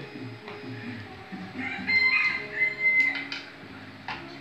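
Music playing in the background, with steady held notes and a high sustained tone about halfway through. A couple of light clicks sound about three seconds in.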